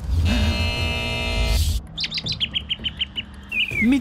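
A TV segment stinger. It opens with a deep, buzzy transition sound effect lasting about a second and a half. Then comes a quick run of high bird-tweet sound effects, about six a second, ending in one falling tweet. A voice begins calling the segment's name right at the end.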